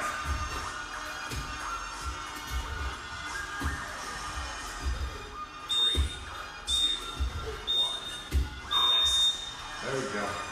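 Digital interval timer beeping the end of a work interval: four high beeps about a second apart in the second half, the last one louder, over repeated thuds of burpee landings on gym mats.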